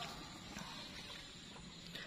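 Faint steady outdoor background noise with a low hum, broken by a couple of tiny clicks.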